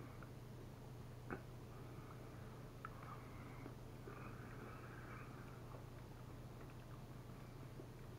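Faint chewing over a low steady hum, with two light clicks about one and three seconds in.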